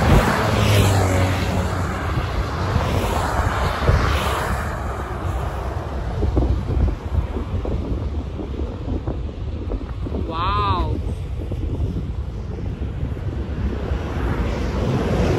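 Motorway traffic passing at speed, a steady rushing rumble, with wind buffeting the microphone, strongest in the first few seconds. A short pitched call sounds once about ten and a half seconds in.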